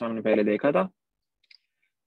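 A man speaking for just under a second, then quiet with one short, faint tap on the tablet screen about a second and a half in.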